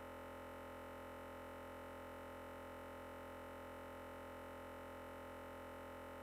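A faint, perfectly steady electronic hum made of several unchanging tones, with no rise, fall or break.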